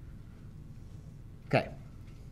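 Low steady room hum, then a short spoken "okay" about one and a half seconds in.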